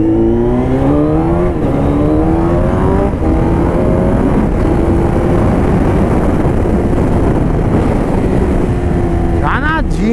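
Suzuki Hayabusa's inline-four engine through an aftermarket stainless-steel exhaust tip, accelerating with rising pitch and shifting up twice in the first three seconds, then holding a steady cruise, with wind rush on the microphone.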